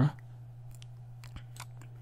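Faint scattered clicks over a steady low electrical hum.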